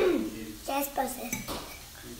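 Metal forks clinking and scraping on ceramic plates as children eat, with a few short clinks in the first second and a half.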